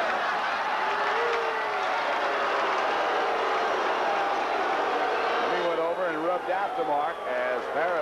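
Tennis stadium crowd talking and calling out all at once, a steady din of many voices. From about six seconds in, single voices stand out over it.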